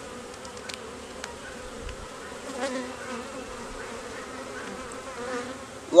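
Honeybees buzzing as a steady hum over an opened hive whose frames are being lifted out, with a couple of faint ticks about a second in.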